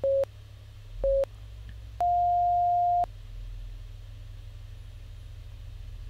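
Interval timer beeping at the end of a work interval: two short beeps a second apart, then one longer, higher beep about two seconds in that marks time up.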